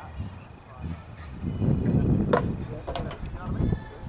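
Low, uneven rumble on an outdoor microphone, loudest a little before halfway, with a sharp knock just past halfway and a fainter one about half a second later. Faint voices sit underneath.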